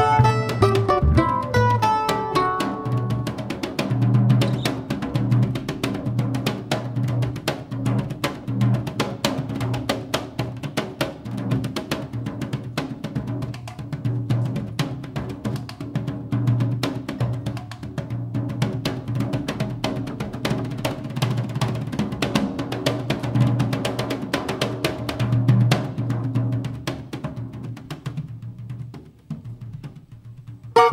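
Drum solo on a Gretsch drum kit played with bare hands on the toms and snare: a dense run of quick strokes over a recurring low tom pulse. A plucked bandolim phrase trails off at the start, and the drumming thins out near the end.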